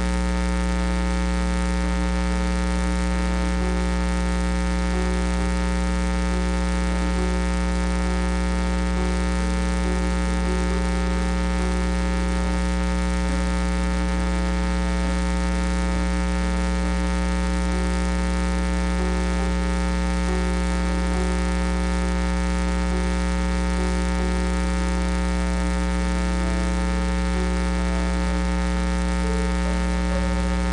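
Steady electrical buzz: mains hum with many overtones that holds the same pitch and level throughout.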